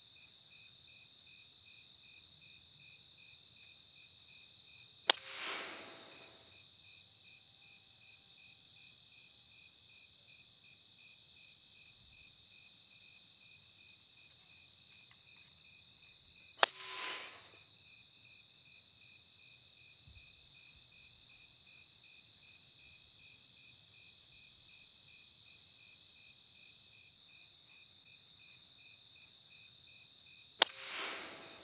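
Two air rifle shots, one about five seconds in and another past the middle, each a sharp crack with a short duller tail. Between and under them, crickets chirp steadily and rhythmically.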